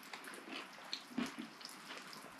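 Faint wet chewing and mouth sounds from eating a juicy pickle coated in sweets, with a few small clicks and a brief soft sound about a second in.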